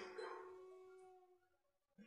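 Near silence: a faint held tone fades out within about the first second.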